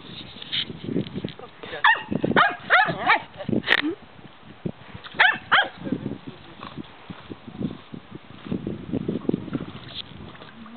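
A dog barking excitedly in sharp, high bursts, a quick cluster about two to four seconds in and two more a little after five seconds, set off by someone fishing beside her.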